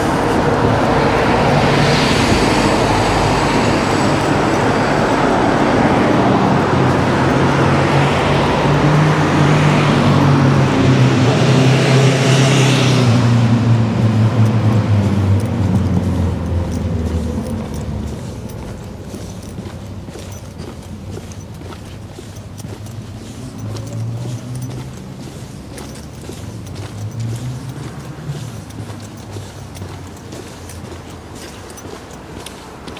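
Road traffic: a motor vehicle's engine passing close by, loud for the first half, its note sinking slightly as it goes before it fades out about seventeen seconds in, leaving a much quieter street background.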